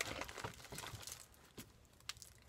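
Plastic candy wrappers crinkling and rustling as small wrapped candies are handled and unwrapped, a crisp crackle that dies down in the last half second.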